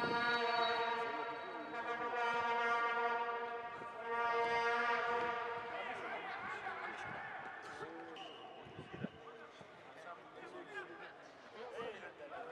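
A spectator's horn blown in long steady blasts on one low note, with short breaks about two and four seconds in, stopping about six seconds in. After it come scattered shouts from players and crowd.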